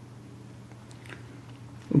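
Faint handling clicks from a hand holding and turning a Walther P22 pistol's polymer grip, a couple of them about a second in, over a steady low hum.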